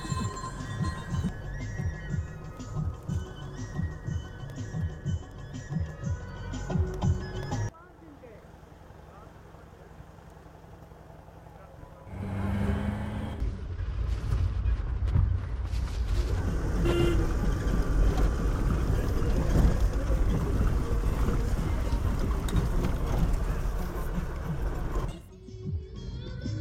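Background music for the first several seconds, then, after a short quieter gap, the steady rumble of road and engine noise from inside a vehicle driving on a rough mountain road.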